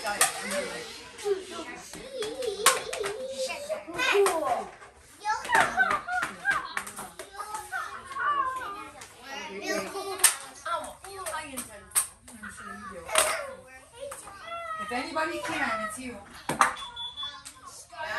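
Several young children chattering and calling out over one another, with a few sharp knocks scattered through.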